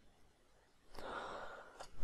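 A man's short intake of breath about a second in, with a faint click near the end.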